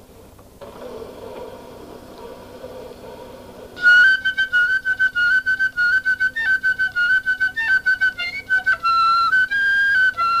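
Solo flute: after a brief pause, a soft breathy rush of air for about three seconds, then quick, detached high notes mostly repeated on one pitch with brief steps up and down, about four or five a second.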